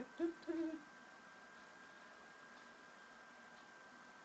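A person's voice hums two short notes, like "hm-hmm", in the first second. After that there is near silence: room tone with a faint, steady high whine.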